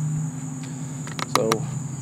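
Insects chirping in a steady high-pitched drone, with a low steady hum underneath and a few light clicks about a second in.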